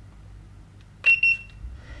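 Handheld pistol-grip infrared thermometer giving one short, high beep about a second in as it takes a temperature reading.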